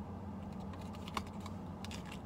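A few light, scattered clicks and taps from fingers handling the hang tag on a tote bag, over a steady low hum.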